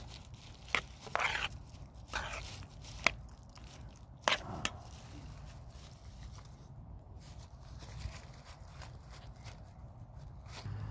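A metal spoon scraping and clinking in an enamel pan of stew, with a few sharp clicks and short scrapes in the first half and a quieter stretch after, over a steady low background hum.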